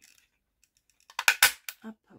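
Handheld lever craft punch squeezed shut on a strip of thick scrap paper: a quick run of sharp clicks and snaps about a second in as the die cuts out a scalloped round.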